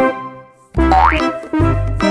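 Upbeat children's background music with a bouncy bass beat, broken by a short gap, then a quick rising slide in pitch about a second in.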